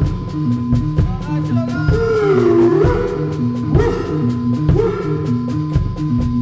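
A band playing live in a rehearsal room: a drum kit keeps a steady beat on the cymbals, a bass repeats a two-note figure, and a lead line swoops slowly up and down in pitch.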